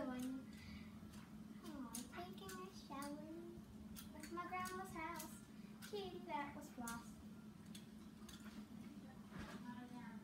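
A young girl's voice talking quietly in short phrases, the words indistinct, over a steady low hum.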